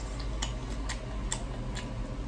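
Wet smacking clicks of open-mouthed chewing, about two a second, over a steady low hum.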